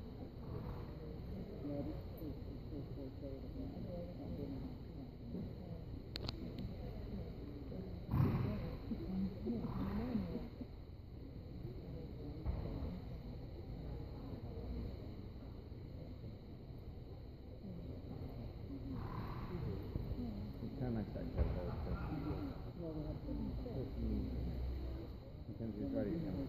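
Indistinct voices and low chatter echoing in a large indoor arena.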